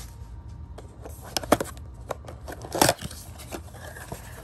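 A cardboard Panini Prizm blaster box being opened by hand: scattered paperboard crackles and scrapes, a few sharp clicks about a second and a half in, and a louder tearing crackle near three seconds in as the top flap comes free.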